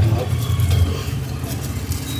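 Low, steady rumble of street traffic running close by, with faint voices mixed in.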